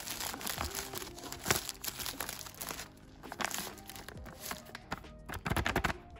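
Plastic zip-lock bag of powder crinkling and rustling in the hands in irregular bursts, loudest near the end, over background music.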